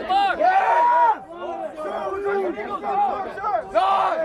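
Several men shouting over one another at once. They are recruits and drill instructors yelling during pull-ups, and no single voice stands out.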